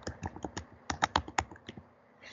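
Typing on a computer keyboard: a quick, uneven run of about ten key clicks as a single word is typed.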